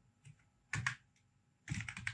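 Typing on a computer keyboard: a handful of separate keystroke clicks with pauses between them, and a quick run of keystrokes near the end.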